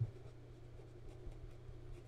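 Steel No. 6 Jowo fountain pen nib writing on Clairefontaine 90 gsm paper, a faint scratching of strokes over a steady low hum, with a brief tap right at the start.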